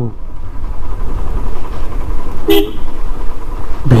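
Motorcycle engine running at low riding speed as a steady low rumble, with one short vehicle-horn toot about two and a half seconds in.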